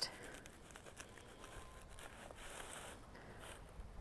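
Faint crinkling and scraping of a plastic nursery pot being twisted and pulled out of firmly packed, slightly damp potting soil, with a few small ticks.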